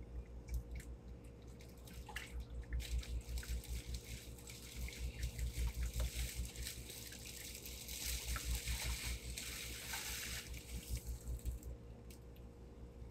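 Dye water splashing and dripping in a plastic tub as a synthetic wig is dunked, worked by hand and lifted out to drain, in several bouts.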